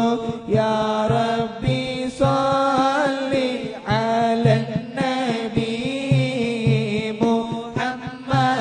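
Moulid being chanted: a melodic Arabic devotional chant in praise of the Prophet Muhammad. The held notes glide up and down over a regular low beat.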